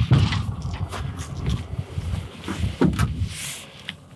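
Handling noise from fetching a knife: scattered knocks and a brief rustle near the end, over a steady low rumble.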